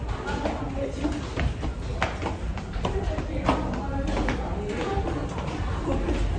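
Footsteps on concrete stairs, a sharp step every half second or so, over a steady low rumble, with indistinct voices.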